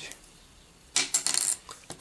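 A standard plastic (nylon) guitar pick dropped onto a hard flat surface. It lands about a second in with a quick run of light, bright clicks as it bounces and settles.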